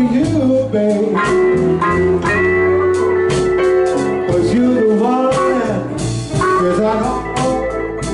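Live electric blues band playing: an electric guitar lead with bent notes and a held note over bass and drums.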